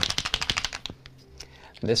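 A whiteout correction pen being shaken briefly, its mixing ball rattling in a quick, even run of clicks for about a second, which then stops.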